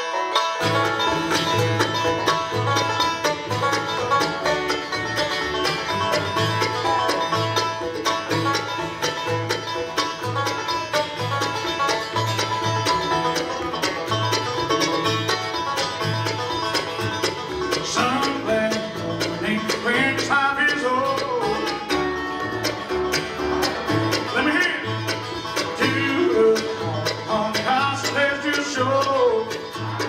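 Live bluegrass band playing a tune on banjo, resonator guitar (dobro), acoustic guitars, mandolin and upright bass, with the bass keeping a steady beat. Sliding notes come through around the middle and again near the end.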